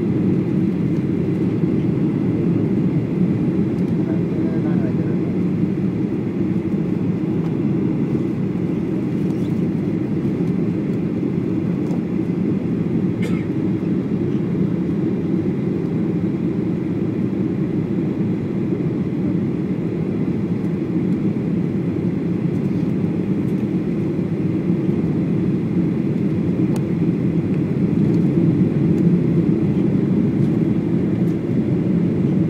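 Steady low rumble of an airliner cabin, jet engines and airflow, heard from a window seat during final approach and landing; the level stays even throughout.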